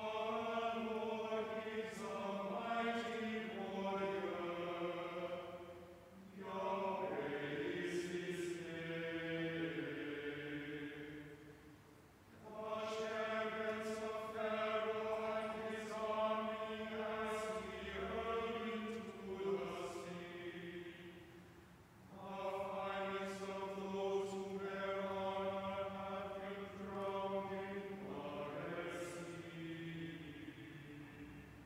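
Choir chanting unaccompanied in four sung phrases, each several seconds long, with short pauses between them.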